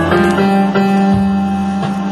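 Hammond Elegante XH-273 organ playing music: a steady held bass note under a melody of separately struck higher notes.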